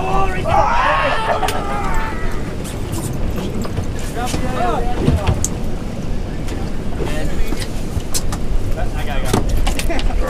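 Steady wind rumble on the microphone of a small boat at sea, with people's voices shouting briefly about a second in, again around five seconds, and near the end.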